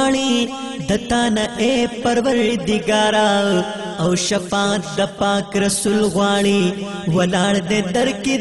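Pashto naat: a wordless sung passage of chanting voices over a held vocal drone.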